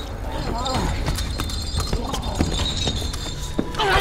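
A low rumbling drone with scattered sharp knocks, and short cries from a voice that fall in pitch, once about half a second in and louder near the end.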